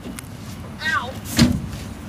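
A single sharp knock a little past the middle, just after a brief, high, falling vocal sound, over a low background.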